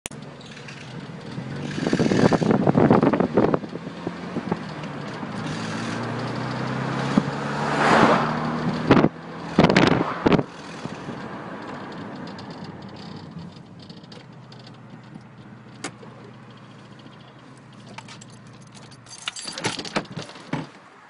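Motor traffic passing on a nearby road: cars swell up and fade away a few times in the first half, then a steadier, quieter traffic hum. A few sharp knocks and rustles come from a handheld phone microphone about halfway through.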